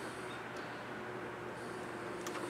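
Quiet room tone: a steady low hiss with a faint, even hum.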